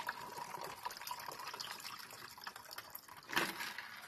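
Ice water pouring from a plastic pitcher into a plastic cup: a faint, steady trickle of filling. A short, louder noise comes near the end.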